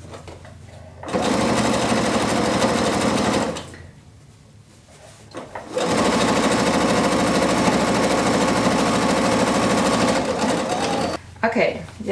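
Computerised domestic sewing machine stitching at speed in two runs, one about two seconds long, then after a short pause one about four seconds long. It is sewing a gathered seam through cotton fabric.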